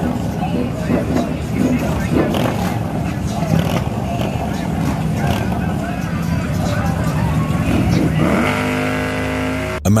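Motorcycle engines running on a crowded street with crowd chatter. Near the end, one engine holds a steady, high-revving note for about a second and a half, then cuts off.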